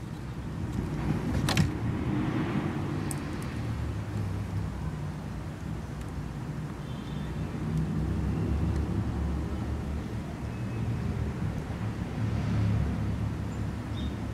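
Low rumble of passing road traffic, swelling and fading several times, with a single sharp click about a second and a half in.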